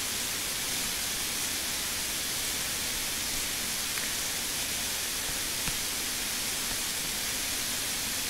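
Steady hiss of recording noise with no other sound, apart from a faint tick about six seconds in.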